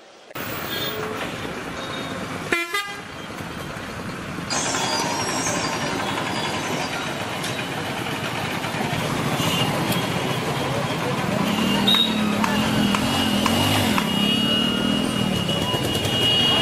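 Busy street traffic: vehicle engines and road noise with car horns tooting, and people's voices in the background.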